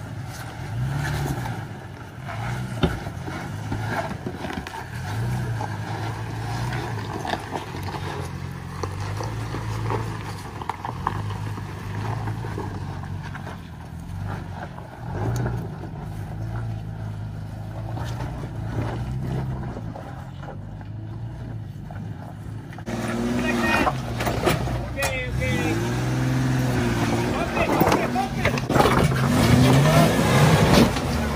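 Pickup truck engine working at low speed as it crawls over rock, the drone swelling and easing with the throttle. About 23 seconds in, a louder SUV engine takes over, revving up and down as it climbs a rock ledge with its tires spinning.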